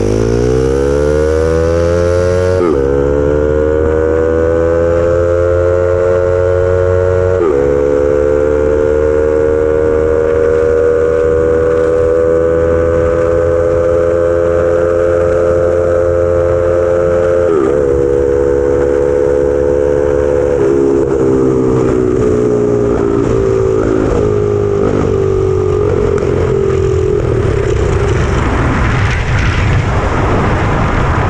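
Turbocharged dirt bike engine of a small go-kart under full throttle, its note climbing quickly at first and then holding high, with brief dips in pitch a few times. In the last third the engine note falls away as the kart slows, leaving mostly a rushing noise near the end.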